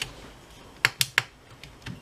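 Three sharp metal clicks close together about a second in, with a few fainter ticks, as the sheet-metal hard drive casing of an HP All-In-One is tugged back to unseat the drive from its connectors.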